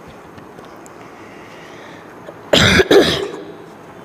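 A boy clearing his throat or coughing, two loud rasps in quick succession about two and a half seconds in, close to a lapel microphone.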